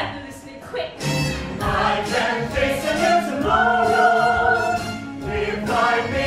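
A musical-theatre chorus singing long, held notes over instrumental accompaniment, recorded live in a theatre. After a brief dip, the voices come back in about a second in.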